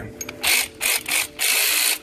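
Earthquake cordless ratchet run unloaded in four short trigger pulls, its motor and ratcheting head buzzing. The last run is the longest and stops abruptly.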